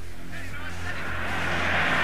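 Opening of a song: a rushing noise that swells steadily louder, with voices calling over a low held tone.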